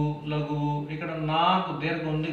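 A man chanting a Telugu verse in a sing-song recitation, holding long steady notes and gliding between them.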